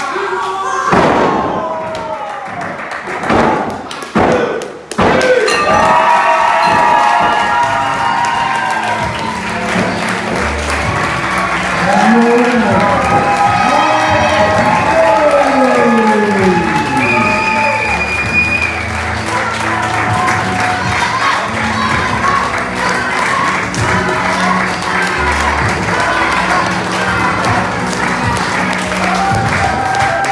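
Heavy thuds on a wrestling ring mat: one big impact about a second in and three more in quick succession around four seconds in. Then music with a steady beat plays through to the end.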